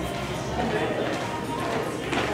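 Indistinct chatter of several voices in a hall, with a woman's footsteps on a hard floor as she starts to walk.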